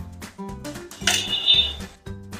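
Gentle plucked-guitar background music, with a hand working batter-coated paneer cubes in a stainless steel bowl; about a second in, the steel bowl clinks and rings briefly.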